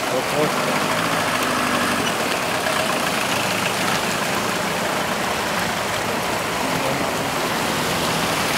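Heavy rain falling in a steady, unbroken rushing hiss, with a faint low steady hum underneath. A faint voice is heard in the first couple of seconds.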